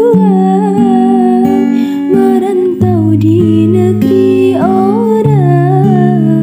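A woman singing a wavering, held melody to her own acoustic guitar, which plays chords that change every half second or so.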